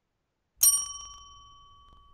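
A single bell chime rings about half a second in: a sharp ding that rings on in a few clear tones and fades slowly. It marks the end of the answering time.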